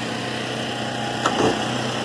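Chantland E-12 bag-moving conveyor running, its electric drive and perforated metal belt giving a steady hum, with a brief knock about a second and a quarter in.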